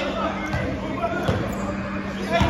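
A basketball bouncing a few times on a hardwood gym floor, short low thumps about half a second and a little over a second in, with players' voices talking in the background.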